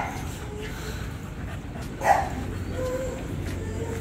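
An American Bully puppy gives one short bark or yip about two seconds in, followed by faint whining near the end.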